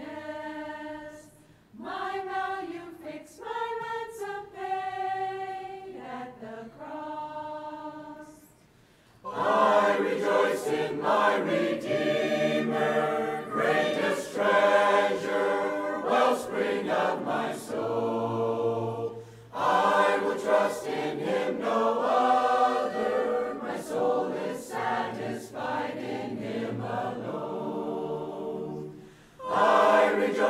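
Mixed choir of men and women singing a hymn a cappella. It sings softly for the first eight seconds or so, then comes in much louder and fuller about nine seconds in, with short breaks between phrases.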